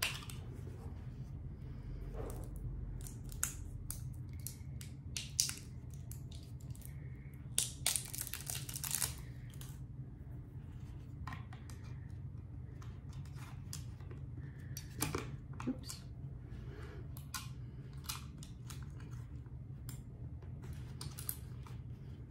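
Hands handling AA batteries and fitting them into the plastic battery compartment of a Dell MS700 travel mouse: scattered small clicks and taps, with a longer rustle about eight seconds in, over a steady low hum.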